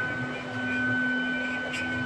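ATS-0609 CNC router running with a steady high whine over a lower hum, with a faint click near the end.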